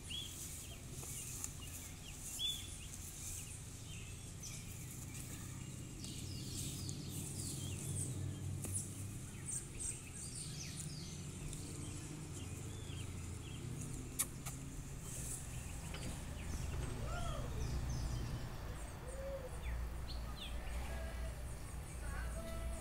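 Rural ambience of birds calling: many short chirps throughout, and a few longer arching calls near the end, over a steady low rumble. There is a single sharp click about fourteen seconds in.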